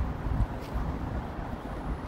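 Wind buffeting an outdoor microphone: a steady low rumble with no distinct events.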